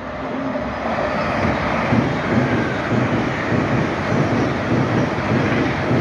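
Nine-car LNER Azuma (Hitachi Class 800-series) high-speed train passing through a station without stopping. It swells quickly into a steady loud rush of wheels on rail, with a regular low beat from the wheels underneath.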